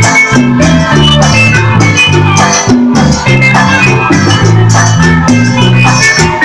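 Live cumbia band playing loudly: electric guitar, drum kit and congas over a moving bass line, with an even, driving percussion beat.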